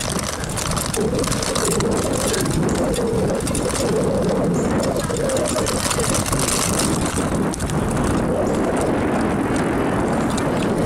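Steady rushing wind and road noise from a bicycle rolling along a paved trail, the air rushing over the microphone of a camera carried by the rider.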